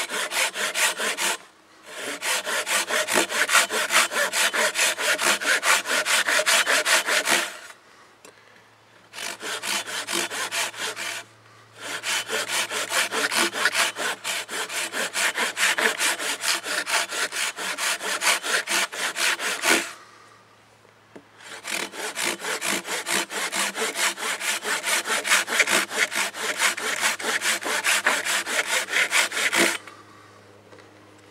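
Hand saw cutting into a log in quick back-and-forth strokes, several a second, stopping briefly four times between bouts as a row of parallel kerfs is cut across the log.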